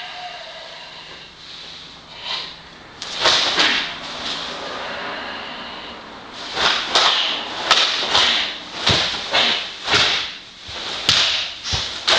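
Karate gi sleeves and jacket snapping sharply with fast strikes and blocks during a kata: a couple of cracks about three seconds in, then a quick series of snaps through the second half. Some strokes come with dull thuds of bare feet on the floor.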